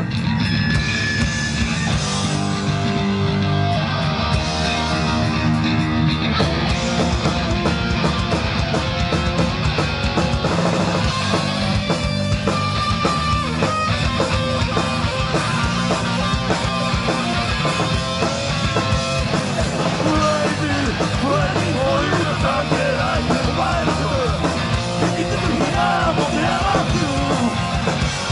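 Live hardcore punk band playing at full volume: distorted electric guitars, bass and pounding drums, with a vocalist singing in the later part, heard from within the audience.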